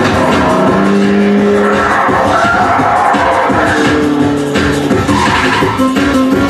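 A film soundtrack playing from a screen: music with racing-car engines and tyre-skidding effects.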